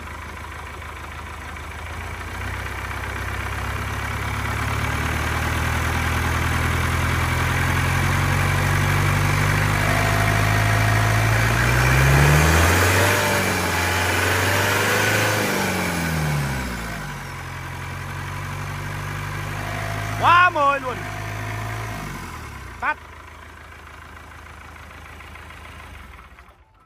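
Isuzu 4KH1 four-cylinder turbo diesel test-running on a stand, revved slowly up over about ten seconds, wavering at high revs, then easing back down. It stops near the end with a short knock. It runs smoothly ('êm'), sold as an original engine with no smoke and no blow-by.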